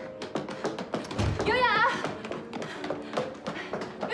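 Quick taps and knocks, with a low thud a little over a second in and one brief, wavering high-pitched cry from a child about a second and a half in, over soft background music.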